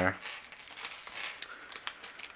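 Small plastic LEGO accessory pieces tipped out of a plastic bag, clicking and clattering onto a hard tabletop in a quick scatter of ticks that is thickest in the second half.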